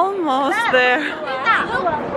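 A high-pitched voice with sliding pitch, speaking or calling out without clear words.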